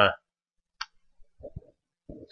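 A man's lecturing voice breaks off, leaving a pause that is near silent apart from a single short click a little under a second in and faint mouth or breath sounds before speech starts again.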